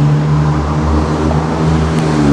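An engine idling: a steady, low, even drone with no change in pitch.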